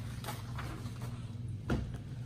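Paper pages of a piano lesson book being turned on the music stand, with faint rustles and ticks over a steady low hum, and a soft thump about a second and a half in.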